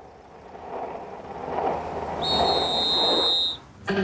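Skateboard and bicycle wheels rolling on asphalt, growing louder. For about a second and a half past the middle, a steady high whistle-like tone joins in.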